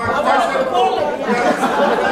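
Speech only: a man's voice through a microphone over people chattering in a large hall.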